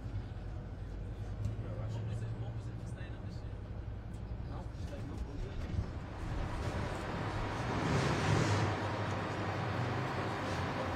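Low, steady hum of an idling coach engine, with faint voices. A rushing hiss swells about seven seconds in and peaks near the end.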